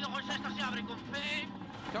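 Ford Focus RS WRC's turbocharged four-cylinder engine running at a steady pitch, heard from inside the cabin, fading near the end, under a man's voice quickly calling what sound like pace notes over the intercom.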